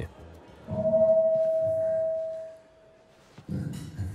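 Live band on stage starting a song: a single held note over a low bass sound that fades away, then the band starting to play near the end.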